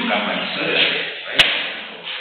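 A single sharp knock about one and a half seconds in, over indistinct talking.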